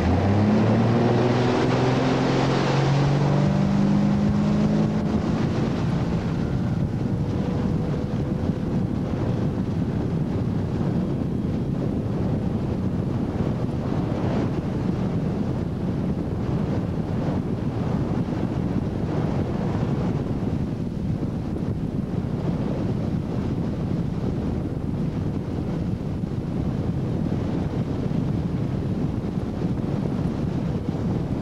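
Ski boat's inboard engine accelerating hard from a start to pull a barefoot skier up on the boom, its pitch rising over the first few seconds, then running steadily at speed. Heavy wind buffeting the microphone and rushing water fill the rest.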